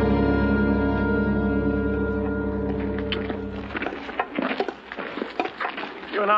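Film-score music of sustained held chords over a low drone, fading out about four seconds in. As it fades, scattered light clicks and scuffs come in, fitting footsteps of men walking in a prison yard.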